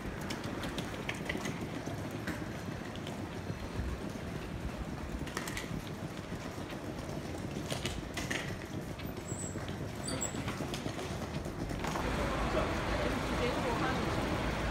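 Busy airport terminal hall: a steady murmur of voices and the low rumble of suitcase wheels rolling on a hard floor, with a few sharp clicks. Near the end the sound gets louder and fuller as the outdoor kerbside traffic comes in.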